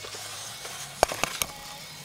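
A few light clicks and taps of handling, three in quick succession about a second in, over a faint steady hum.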